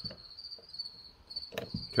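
A high-pitched insect trill, cricket-like, steady with short breaks. Near the end, a single sharp click as the piston and cylinder are handled.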